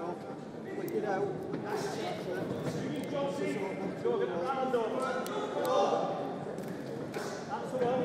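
Voices from the crowd and the boxers' corners calling out in a large hall during a boxing bout, with scattered sharp thuds and slaps of punches and boxers' feet on the ring canvas.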